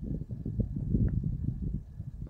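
Wind buffeting the camera's microphone: an uneven low rumble that rises and falls.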